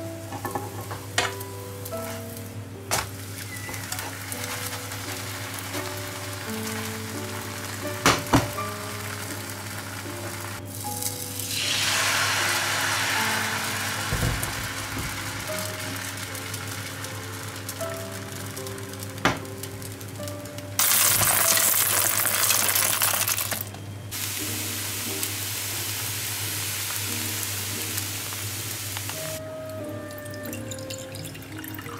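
Thin pancake batter sizzling in a hot non-stick frying pan, with a few sharp clicks of a spatula against the pan. About eleven seconds in, the sizzle swells as fresh batter goes into the pan, and a louder hiss follows for about three seconds past the twenty-second mark.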